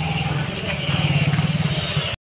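A nearby vehicle engine running with a rapid, steady low pulse, over the general noise of a busy street.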